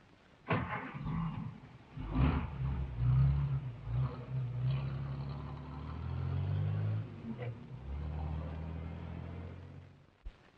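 A car engine running and revving, its note rising and falling, after a sharp noise about half a second in; the sound stops abruptly at the end.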